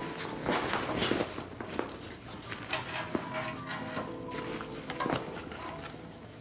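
Ripstop nylon duffel bag being handled: fabric rustling, with its strap buckles and metal hook clips clinking and knocking against each other and the bag many times.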